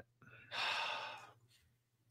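A person's short breathy exhale into a microphone, like a sigh, about half a second in and lasting under a second.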